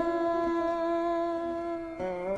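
A woman's voice holding one long, steady note at the close of a sung line in Carnatic style, fading slightly toward the end.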